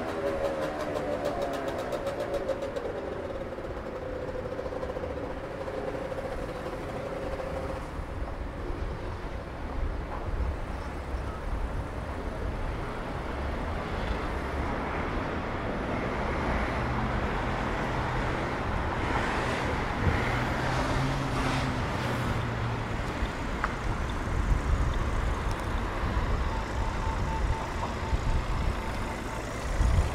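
City road traffic: cars and a coach bus passing and turning, a steady mix of engine and tyre noise with a deeper engine sound about halfway through. A faint pitched tone comes in near the end.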